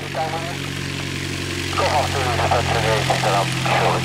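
Piper PA-28's piston engine and propeller ticking over at low power as the aircraft taxis on grass, a steady low hum.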